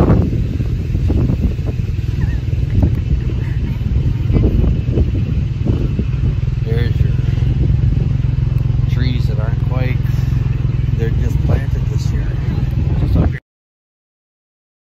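Steady low rumble of a moving wagon ride, with wind buffeting the microphone. Voices talk faintly over it, and the sound cuts off suddenly near the end.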